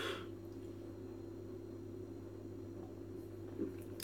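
Quiet room tone with a steady low hum; a brief sip of beer from a glass right at the start.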